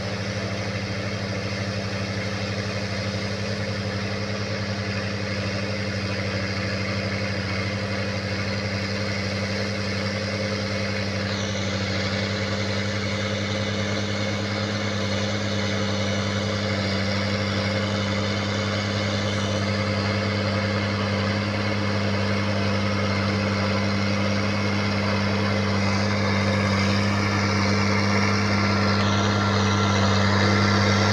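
Farm tractor's diesel engine running steadily as it pulls a tillage implement through the field, growing slowly louder as it comes closer.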